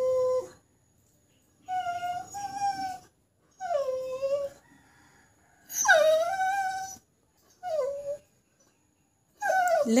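A dog howling in a string of about five drawn-out, wavering cries, each about a second long, with short silent gaps between them.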